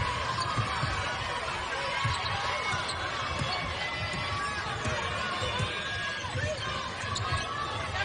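Basketball dribbled on a hardwood court, repeated low bounces, over the steady murmur of an arena crowd.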